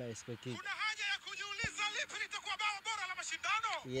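Football commentary played through a phone's small speaker: a commentator's fast voice, thin and tinny.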